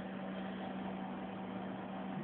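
Cooling fans of a homebuilt vacuum-tube RF power supply running steadily, a constant whir with a low steady hum underneath.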